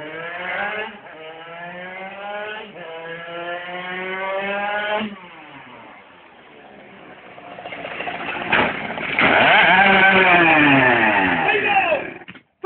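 Aprilia RS50's small two-stroke engine accelerating hard, its pitch climbing with two short drops for gear changes in the first five seconds. After a quieter spell there is a sharp knock about eight and a half seconds in, the sound of the bike going down, followed by the loudest part: a loud pitched sound that swings up and down.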